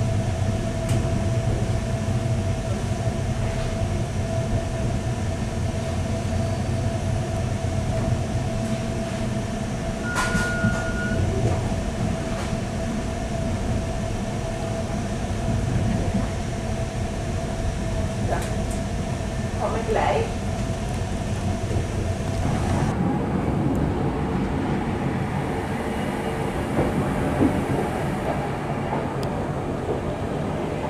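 Night-train passenger coach running along the track, heard from inside: a steady rumble with a constant hum and a brief high tone about ten seconds in. About two-thirds of the way through the sound changes abruptly to a duller rumble.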